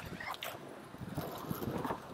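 Skateboard rolling on smooth pavement: a low rumble from the wheels with a string of light, irregular knocks, the strongest near the end.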